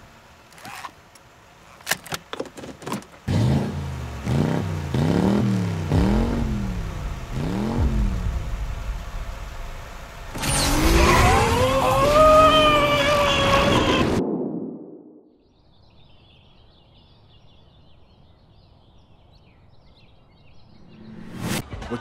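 Revving car-engine sound, its pitch rising and falling several times, then a louder, higher whine that climbs and falls for about four seconds and cuts off, leaving a faint hiss.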